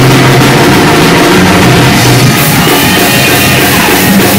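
A church praise band playing loud, driving music with a drum kit and sustained low bass notes that change pitch every second or so.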